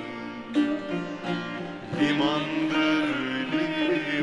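Live Turkish folk song (türkü): plucked string accompaniment, joined about halfway in by a man's voice singing a long, ornamented line.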